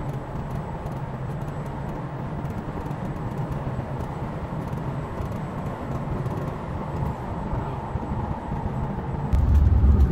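Steady engine and road noise inside a coach bus cruising at highway speed. About nine seconds in, a much louder, deeper rumble sets in.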